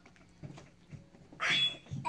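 A child's short, breathy outburst about one and a half seconds in, after a near-quiet stretch.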